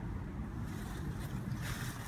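Low, steady rumble of outdoor air moving over the microphone, with no distinct events.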